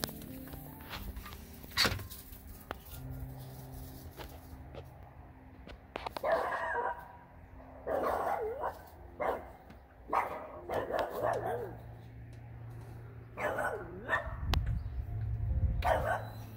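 Boston terrier barking, a run of short barks from about six seconds in to near the end, over background music. A single sharp click about two seconds in.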